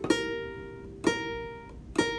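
Ukulele picking a slow single-note melody: two plucked notes about a second apart, each left to ring, with the next note starting at the very end.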